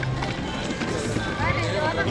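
Theme-park walkway ambience: background music and other people's voices, with footsteps of someone walking.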